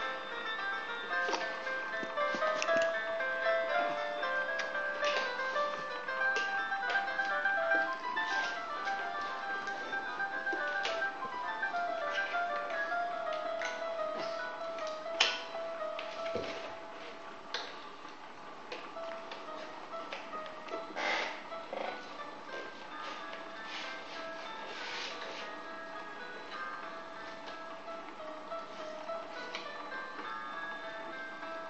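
Simple electronic lullaby melody playing from an infant swing's built-in music unit, a steady tinkling tune of single notes. It gets somewhat quieter about halfway through, and a few light taps and clicks come through over it.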